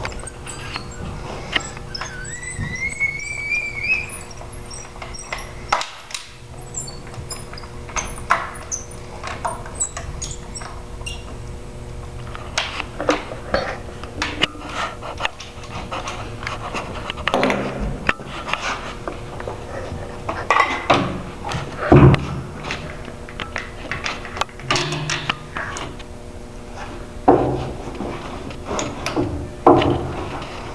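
Barnett Quad 400 crossbow being cocked with its built-in crank cocking system: irregular clicks and knocks of the crank and string handling, with a brief rising squeak a few seconds in. Two louder thunks come in the second half.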